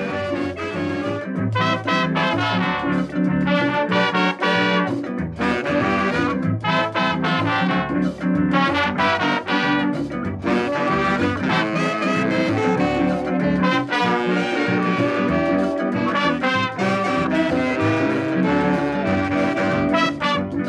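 Instrumental break in a calypso song: a brass horn section plays the melody over a bass line and rhythm section, with no singing.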